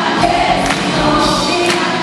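Live MPB band music with sung vocals, recorded from within the audience, with sustained sung notes over the band. A sharp percussion strike lands about once a second, twice here.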